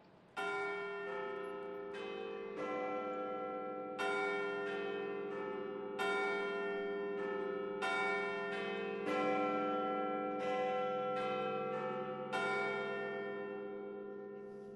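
Bells chiming a slow run of struck notes, a strike every half second to a second or so, each note ringing on under the next and the last one dying away near the end; a recorded sound cue for a scene change.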